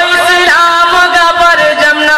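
A man's voice singing Urdu verse in tarannum, the melodic chanted recitation of a mushaira, holding long notes with slides between them.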